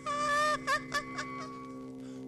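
A woman's high-pitched laughter: one long drawn-out cry, then two short ones, over sustained droning film music.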